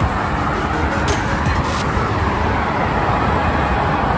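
Steady noise of road traffic on a multi-lane highway, with cars passing close by.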